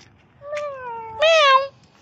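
A pet cat meowing: one long meow starting about half a second in, sliding slightly down in pitch, then louder in its second half with a rise and fall before it stops.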